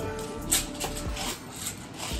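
Background music with held tones, and a sharp click about half a second in.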